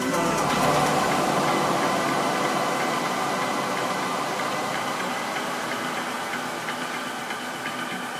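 A breakdown in an electronic dance track: the kick and bass drop out, leaving a dense, noisy synth wash with faint ticking that slowly fades.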